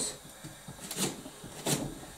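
Kitchen knife slicing through a leek onto a cutting board: a few soft cuts, the two clearest about a second in and near the end.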